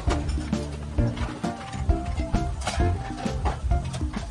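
Background music: a tune of short melodic notes over a bass line, with a steady beat.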